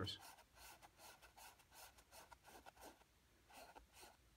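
Faint brush strokes of an oil-paint brush on canvas: a run of short strokes, about four a second, with a brief pause before a last couple near the end.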